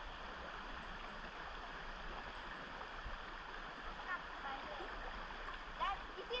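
Steady rush of a shallow river flowing past, with faint voices in the distance about four seconds in and again near the end.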